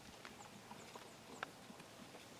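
Near silence outdoors: a faint hush with a few small ticks and one soft click about one and a half seconds in.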